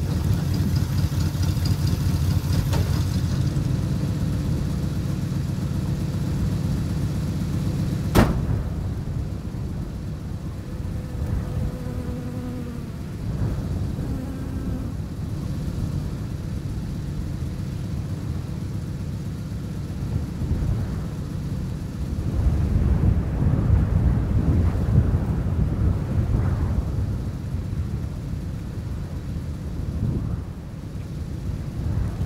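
Low steady rumble of wind and a pickup truck's engine. A single sharp bang comes about eight seconds in, and the rumble swells again later on.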